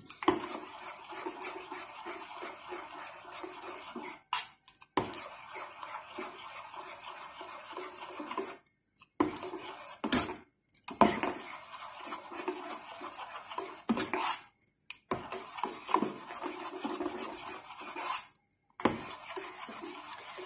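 A metal spoon stirring and scraping against the inside of a small stainless steel pot as leftover soap pieces melt in milk, with a few brief breaks.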